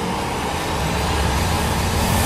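A steady rushing noise with a low rumble, a sound-design effect in a promotional montage, heard in a gap between music cues.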